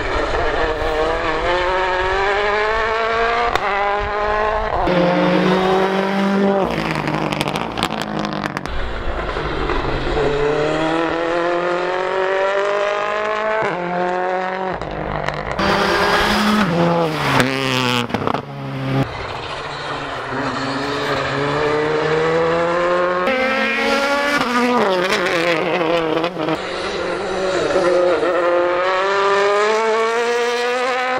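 Rally cars' turbocharged four-cylinder engines accelerating hard as they pass, one car after another. Each engine climbs steadily in pitch and drops back at the gear changes, with abrupt jumps between cars every few seconds.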